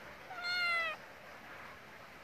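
A black-and-white cat meows once, a single call of about half a second that rises slightly in pitch and dips at the end.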